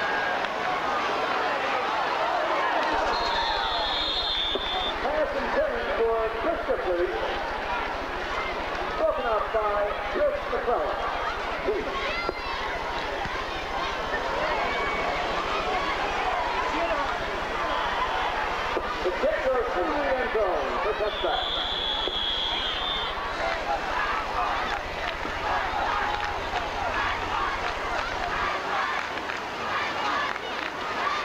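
A crowd of spectators talking over one another, with two brief high whistle tones, one about four seconds in and one about twenty-one seconds in.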